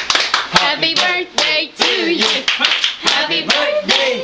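A group of people clapping their hands together, several claps a second at an uneven pace, with mixed voices calling and starting to sing underneath.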